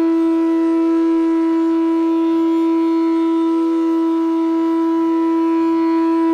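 Bansuri, the Indian bamboo transverse flute, holding one long steady note in a raga, with no tabla playing.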